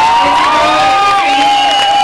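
Arena crowd cheering and shouting, with a few voices holding long, steady notes.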